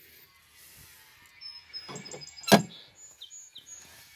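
Faint outdoor background with birds chirping in short high notes, and a single sharp click or knock about two and a half seconds in.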